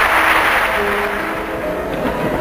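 Arena crowd applause fading out over the first second or so, as a soundtrack melody of held notes comes in.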